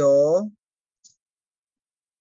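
A voice finishing a spoken word in the first half second, then silence broken only by a faint click about a second in.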